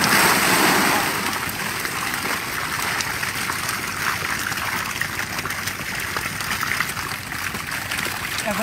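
Water splashing and trickling as a woven basket of fish is scooped from a bamboo fish trap and emptied, dripping, into a wooden boat. The loudest splash comes in the first second, then steady sloshing and dripping with small patters.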